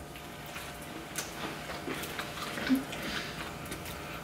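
Quiet room with faint clicks and small eating noises as people bite into and chew sauced chicken wings.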